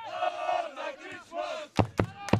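Shouted calls from voices on a football pitch: one long raised call, then a shorter one, with two sharp knocks near the end.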